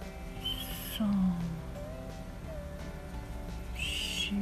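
Soft background music with a repeating phrase: a short high shimmer, then a low falling tone about a second in, and the same pair again near the end.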